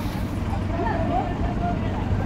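A heavy vehicle's engine running steadily with a low hum, under faint voices talking.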